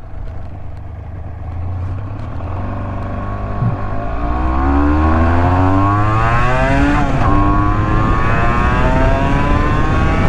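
1984 Honda NS250R's two-stroke V-twin engine accelerating through the gears. Its pitch climbs, breaks briefly at a gear change about three and a half seconds in and again about seven seconds in, then climbs again. The sound grows louder after the first change.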